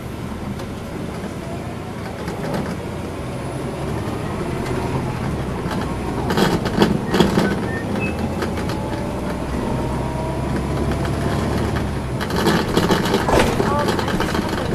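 Cabin sound of a 2010 NABI 40-SFW suburban transit bus under way, its Cummins ISL9 diesel running with a steady low drone. A faint whine rises slowly as the bus picks up speed.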